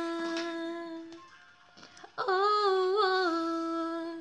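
A woman singing a long held note that fades out about a second in. After a short pause she starts a new drawn-out 'ohh' that rises and wavers in pitch, then holds it steady.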